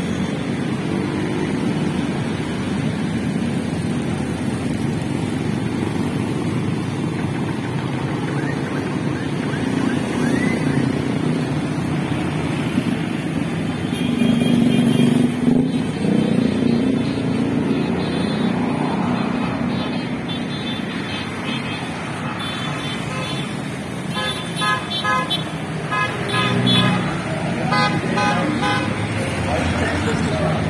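A convoy of motorcycles and other road traffic passing close by, engines running steadily, with horns tooting in short repeated beeps near the end.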